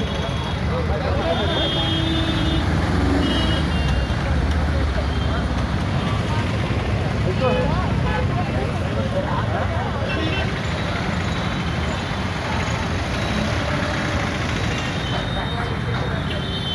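Roadside traffic noise with a vehicle engine running steadily, horns tooting briefly a few times, and people's voices mixed in.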